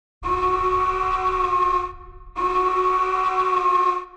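Two long, steady horn blasts, each lasting about a second and a half. The second begins just after the first stops.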